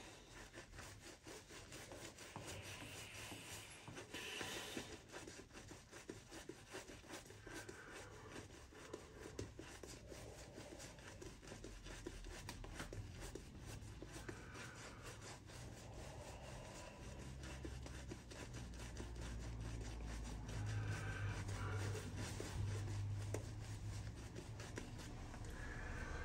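Boar-bristle shaving brush working shaving-soap lather onto a stubbled face: faint, continuous bristly rubbing. A low rumble comes in about halfway through.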